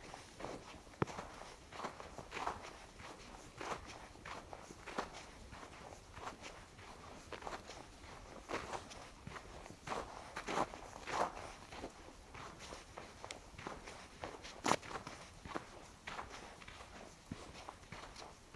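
Footsteps crunching in fresh snow at a steady walking pace of about one and a half steps a second, with one sharper step about three-quarters of the way through.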